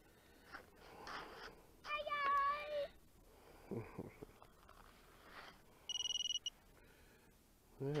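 Electronic beeps from the micro FPV quadcopter's gear: a steady lower beep about a second long about two seconds in, then a short, high, rapidly pulsing beep about six seconds in, with a few soft handling knocks between them.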